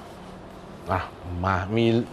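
A man's voice speaking Thai, starting about a second in after a short quiet stretch of studio room tone.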